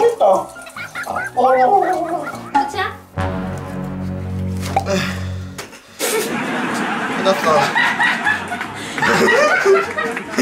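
Garbled, gargling vocal noises from a man, a steady low buzz for about two and a half seconds in the middle, then laughter over background music.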